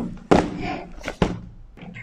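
Three sudden thumps, the second the loudest with a short decay, as a cardboard parcel box is caught and set down on a stone tabletop.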